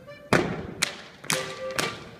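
Schuhplattler dancers' sharp hand slaps and claps, struck together in an even beat about twice a second, over band music.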